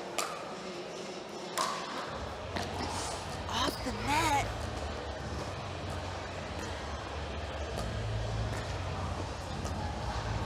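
Pickleball paddles striking the ball during a rally, heard as a few sharp pops spaced a second or more apart. They sit over low background chatter, with a short wavering voice call about four seconds in.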